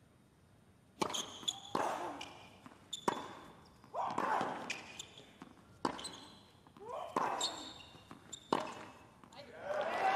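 A tennis rally on a hard court: after a near-silent moment for the service toss, the serve and then about half a dozen racket strikes on the ball follow roughly every second or two, with ball bounces in between and players' grunts on some shots. Crowd applause begins to rise near the end as the point finishes.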